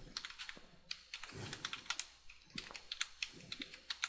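Typing on a computer keyboard: a fast run of keystrokes spelling out a name, with a brief pause about a second in.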